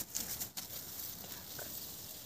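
Faint handling sounds of a wild mushroom being broken apart by hand, with a few light clicks near the start.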